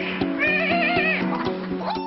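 A man imitating the whistling call of a wild dog (dhole) with his voice and hand at his nose: a wavering, high-pitched call about half a second in, lasting under a second. Background music with a steady beat plays underneath.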